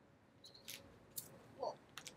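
Mostly quiet, with a few faint short clicks and scuffs and a brief faint vocal sound just past the middle, from a person throwing a toy flying disc.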